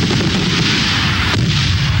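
Fireworks going off: a continuous rumble of booms and crackle, with a sharper bang about one and a half seconds in.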